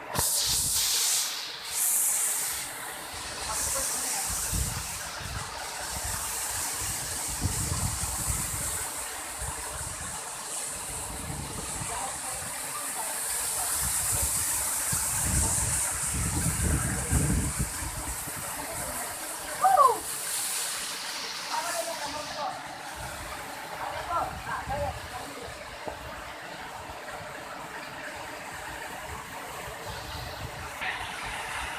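Waterfall cascading over rocks: a steady rushing hiss of falling water, a little weaker in the last third, with occasional low rumbles.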